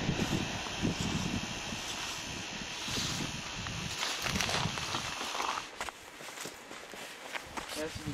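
Footsteps of hikers walking up a dirt trail, over a steady hiss. The steps grow fainter a little past halfway through.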